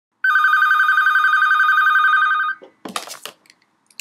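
Telephone ringing: one unbroken warbling ring of about two seconds. A short clatter follows as the phone is picked up to be answered.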